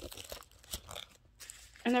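Band-aids being handled and tucked into a small first-aid bag: soft crinkling and rustling with a few small clicks.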